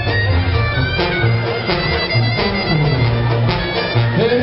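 Live Mexican brass band (banda) playing an instrumental passage: held wind-instrument lines over a pulsing bass, with no singing.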